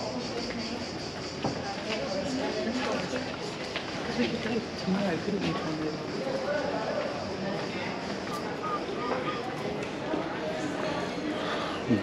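Indistinct talk of several people nearby, no single voice in front, over a steady high hiss.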